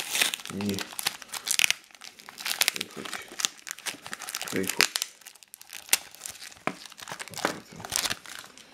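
A tape-sealed kraft-paper envelope being torn open by hand and a small plastic coin bag crinkling as it is drawn out: a dense run of crackles, rustles and tearing.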